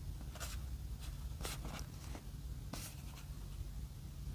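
Fingers shifting their grip on a cardboard product box, giving a few faint, short scrapes and rustles against the card over a low steady hum.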